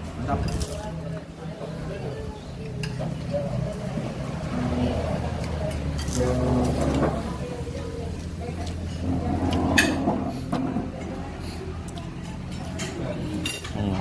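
Scattered clinks of dishes and cutlery on a meal table, with indistinct voices in the background and a steady low hum.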